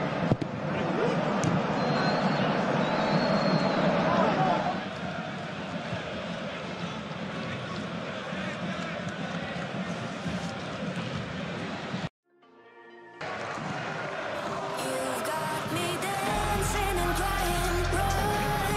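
Football match broadcast sound with stadium background noise, broken by a sudden dropout to near silence about twelve seconds in. Background music follows, with a heavy bass beat coming in near the end.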